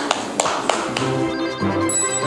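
Three sharp taps in the first second, then a news channel's programme ident music starts with sustained, bright chiming tones.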